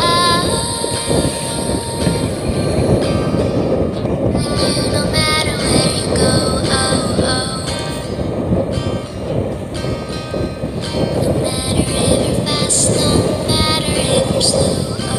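Small motorboat running under way, its motor rumbling steadily with wind and rushing water, under music.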